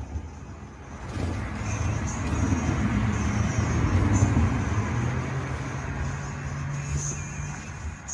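Road traffic close by: a vehicle passes, its engine hum and tyre noise building from about a second in, loudest around the middle, then easing off.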